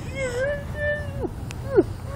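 High-pitched whining cries: one long wavering note, a shorter level one, then several short cries that drop in pitch.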